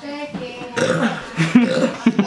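A person belching, a loud drawn-out voiced burp.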